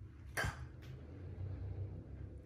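Quiet room tone with a faint low hum and a single short click about half a second in.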